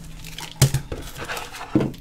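Hands rummaging in small cardboard boxes of trading-card booster packs: light rustling, with two sharp knocks about half a second in and near the end.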